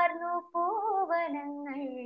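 A young woman singing solo without accompaniment: a held note, a brief break about half a second in, then a quick ornamented run and another long held note.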